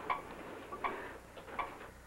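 Operating-room heart monitor (cardioscope) beeping steadily, a short blip about every three-quarters of a second, marking the patient's heartbeat.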